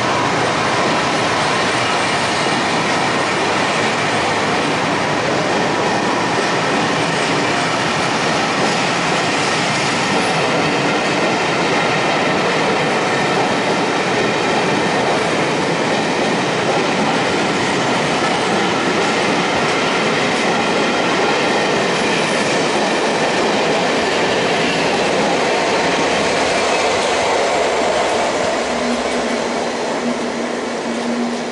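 British Pullman carriages running past close at speed, a steady loud noise of wheels on the rails, easing slightly near the end.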